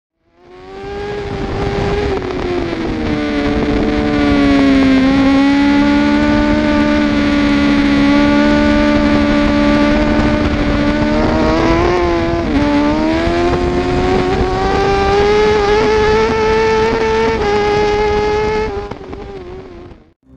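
Racing motorcycle engine heard close up from an onboard camera at speed on a track, revs rising and falling through the lap, with a brief sharp dip past the middle and then a long climb. The sound fades out near the end.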